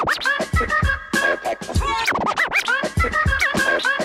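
Turntable scratching over a boom-bap hip hop beat: a record is cut back and forth in quick swooping pitch glides at the start and again around the middle, over steady kick and snare drums.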